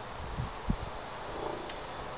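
Low, uneven rumble of wind buffeting the microphone over a faint outdoor hiss, with one soft thump about two-thirds of a second in.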